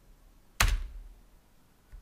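A single hard keystroke on a computer keyboard about half a second in: the Enter key struck to run a typed command.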